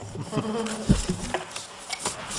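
A short laugh and low voices, over a steady buzzing hum, with a single click about a second in.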